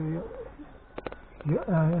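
A man's voice speaking Japanese trails off, then after a short pause with two or three sharp clicks about a second in, his voice resumes on a rising pitch.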